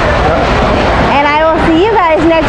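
People talking, with a noisier, unvoiced stretch in the first second, over a steady low background hum.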